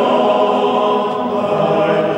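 Mixed choir of men and women singing held chords in a large stone abbey church.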